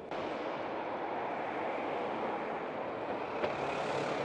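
Road traffic: a car driving past close by over a steady, even rush of engine and tyre noise.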